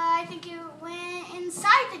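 A girl's voice stretching one word into a long held vowel on a nearly steady pitch, a stalling 'aaand', with a sharp, louder syllable near the end.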